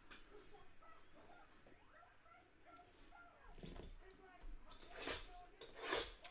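Quiet room with a faint voice, then a few seconds of scraping and rustling handling noise from about three and a half seconds in, as a box cutter is worked against the plastic wrap of a trading-card hobby box.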